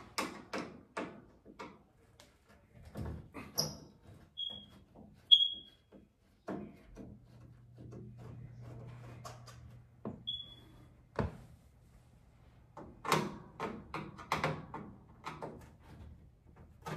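Screwdriver taking the screws out of a dryer door hinge: scattered small clicks and metal knocks, busier near the end, with a few brief high squeaks.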